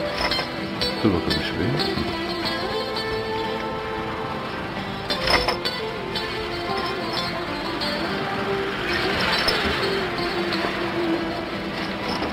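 Background music score with slow held notes, and a short sharp sound about five seconds in.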